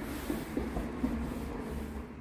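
Hands rubbing across a rough-textured, grained and stained wooden tabletop: a dry, steady brushing of skin on wood.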